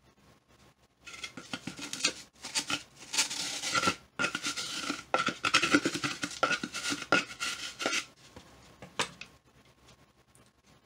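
A scouring pad on the end of a pair of scissors scrubbing around the inside of a hollow dried gourd: rapid scratchy rubbing that starts about a second in and stops near the end, with one more short scrape just after.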